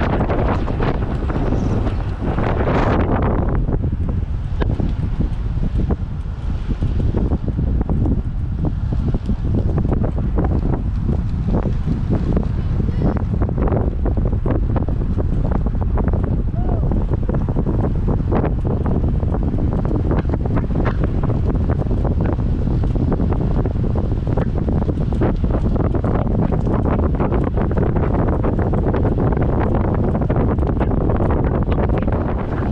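Wind buffeting the microphone of a bike-mounted camera on a moving road bike: a loud, steady, deep rumble with many small ticks and knocks through it.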